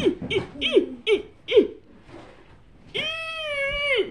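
A high-pitched human voice laughing in a few short bursts, then about a second in near the end a long, held high-pitched vocal cry that drops in pitch as it ends.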